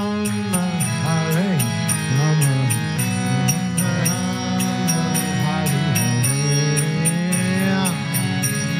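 Kirtan: a man's voice sings a chant melody over a harmonium's steady droning chords. Small hand cymbals keep a regular high metallic beat of a few strikes a second.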